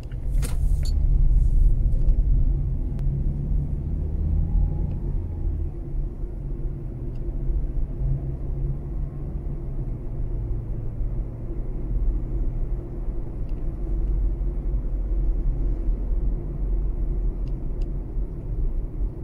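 A Mazda3 driving, heard from inside the cabin: a steady low rumble of engine and road noise. There is an even engine hum through the first few seconds and a short burst of noise about half a second in.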